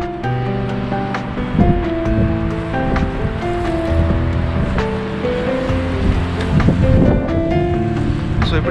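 Background music, a melody of held notes stepping up and down, over a low rushing of wind on the microphone.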